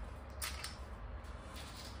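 Faint, brief clicks of eating at a table, one about half a second in and another near the end, over a low steady hum.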